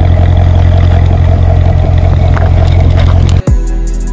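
A car engine's loud, steady, deep exhaust drone, which cuts off suddenly about three and a half seconds in. Music with sharp drum hits starts right after.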